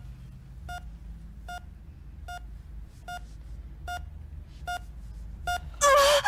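Hospital bedside monitor beeping steadily, a short mid-pitched beep a little more than once a second, over a low room hum. Near the end a woman in labour gives a loud gasp.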